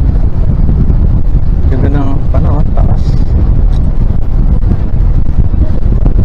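Wind buffeting the microphone on the deck of a moving creek boat, a heavy low rumble; a voice speaks briefly about two seconds in.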